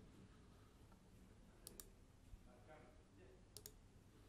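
Faint computer mouse clicks over near silence: a double click a little under two seconds in, a single click just after, and another double click near the end.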